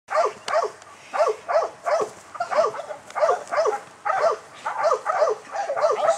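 K9 training dog barking repeatedly, about two to three barks a second, often in quick pairs.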